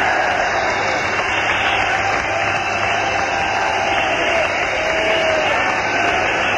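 Concert audience in a large hall cheering and shouting between songs: a steady wash of crowd noise with scattered voices calling out.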